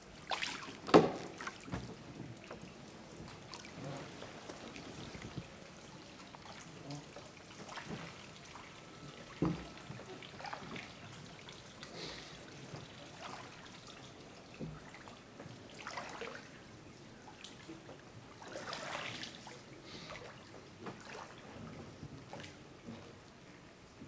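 Gondola oar dipping and pulling through canal water: irregular splashing, swirling and trickling with each stroke. A few sharp knocks stand out, the loudest about a second in and another a little past the middle.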